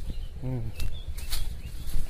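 Rustling of a cast net being handled, over a steady low rumble on the microphone, with a few sharp crackles. A short grunt-like vocal sound comes about half a second in.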